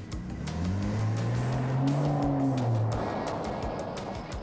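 A second-generation BMW X3 pulls away from a standstill. Its engine note rises in pitch, then falls away as the SUV drives off, with background music underneath.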